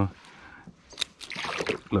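Water splashing and sloshing beside a kayak as a bass is released from a lip grip and swims off, with a sharp click about a second in.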